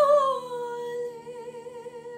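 A woman singing one long held note that ends the song. It steps down in pitch about half a second in, then wavers with vibrato and grows quieter, over a soft sustained chord.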